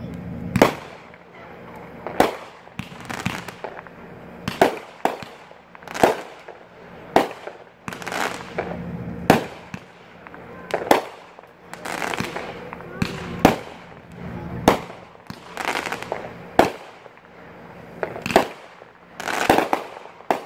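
Consumer multi-shot firework cake, Katana, firing shot after shot, about one sharp report a second, each echoing briefly.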